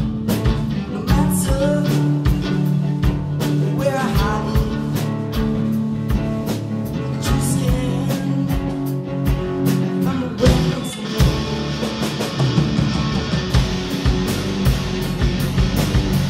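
Rock band playing live: electric guitars, bass guitar and drum kit, with steady drum hits and some bending guitar notes in the first few seconds. About ten and a half seconds in, cymbals wash in and the sound gets denser.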